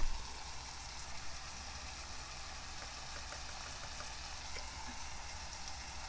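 Onion and tomato masala sizzling gently in a non-stick pot over a gas flame: a soft, steady hiss, with a brief tap right at the start and a few faint ticks.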